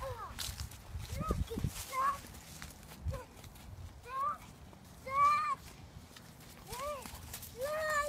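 A small child's short, high-pitched vocal sounds, repeated about every second, each rising and falling in pitch. A few low thuds come in the first few seconds.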